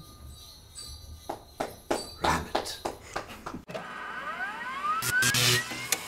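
Short musical sting: a run of jingling strikes that come closer and closer together, then a rising glide in pitch over the last two seconds.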